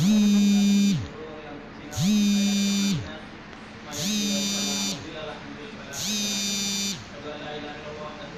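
Four electric buzzes from a small vibrating motor, each about a second long and two seconds apart, sliding up in pitch as it starts and down as it stops, the last two a little fainter.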